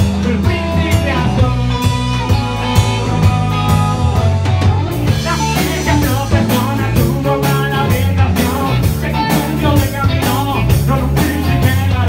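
Live rock band playing: a male singer over electric guitar and bass guitar with a steady beat. The sound gets fuller and brighter about five seconds in.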